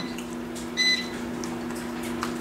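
A steady low electrical hum with two short high-pitched beeps, one at the start and another just under a second in.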